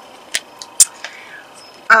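Two short, sharp clicks about half a second apart, the second much louder, over a low steady hiss.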